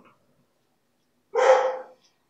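A pet dog barks once, a short loud bark a little over a second in.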